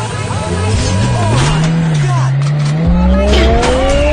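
A car engine revving up, its pitch climbing steadily through the second half, with a low rumble coming in about three seconds in.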